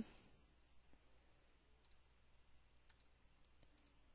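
Near silence with a few faint computer mouse clicks in the second half.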